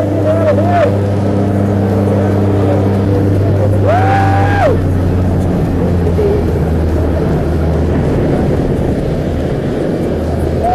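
Jump plane's engines droning steadily inside the cabin, with a rush of wind noise building in the second half as the door is open. A person gives one drawn-out shout about four seconds in.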